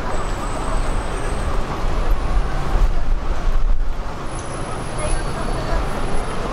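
Steady road traffic on a busy city street, with indistinct voices of passing pedestrians over it.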